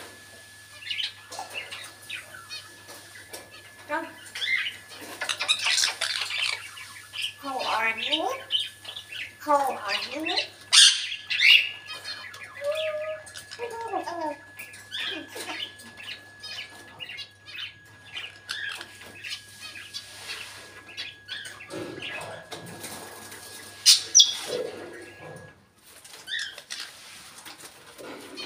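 African grey parrot calling: a busy run of squawks, whistles and chirps with pitch sliding up and down, some of it speech-like chatter, and a few loud shrill calls.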